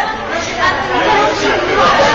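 Indistinct chatter of several people talking at once, their voices overlapping.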